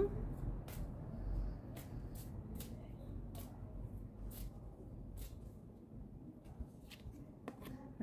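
A deck of Orixá oracle cards being shuffled by hand, overhand, with soft, irregular clicks and slides of card against card.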